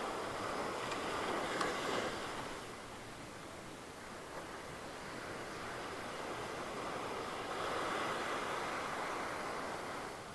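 Sea surf washing up the beach, a steady wash that swells twice, once at the start and again near the end.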